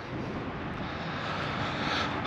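Steady, distant engine rumble in the open air, growing slightly louder.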